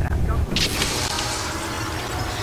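Trailer sound design: a deep rumble, then about half a second in a sudden bright hissing wash with a sharp accent at its start, held steady through the rest.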